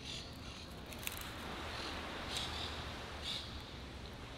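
Steady outdoor background noise with no speech, broken by a few faint, short high-pitched sounds spread through it.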